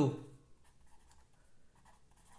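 Red marker pen writing on a sheet of paper: a series of faint short strokes.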